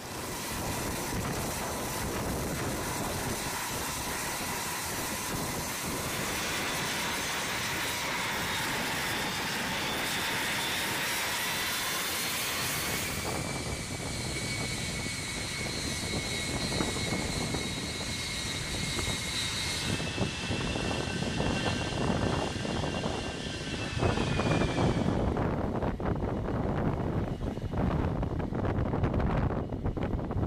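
E-3 Sentry's four turbofan jet engines running: a steady whine over a rushing roar, in several cut-together takes. About two-thirds of the way through, the sound grows louder and rougher as the jet runs up for takeoff.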